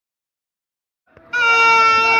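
Silence, then a little over a second in, a horn sounds one loud, steady, unwavering note that is still held at the end.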